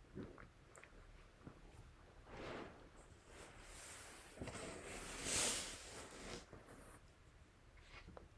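Faint rustling and handling of a felt flannel board as it is lifted and set up, in a few soft swells, the loudest about five seconds in.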